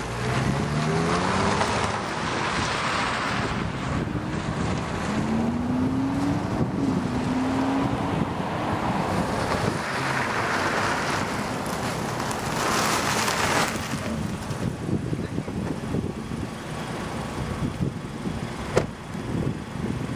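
Mazda CX-5 driving, its four-cylinder engine note rising in pitch as it accelerates, once in the first second and again, longer, from about five to eight seconds in, over a steady rush of road and wind noise.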